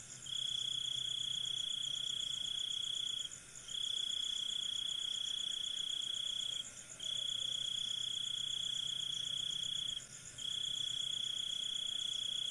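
Cricket trilling steadily in long phrases of about three seconds, each broken by a brief pause.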